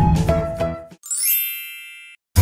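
The tail of a cartoon intro jingle fading out, then, about halfway through, a single bright chime sound effect with shimmering tones climbing upward, which rings and fades away.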